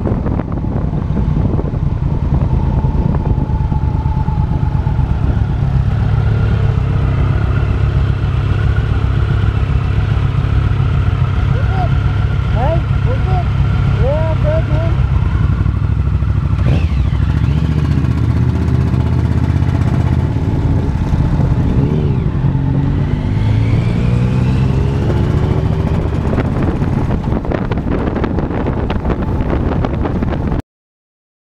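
Motorcycle engine running steadily at road speed, heard from the bike being ridden. For a few seconds past the middle, a tone climbs in pitch as the bike speeds up.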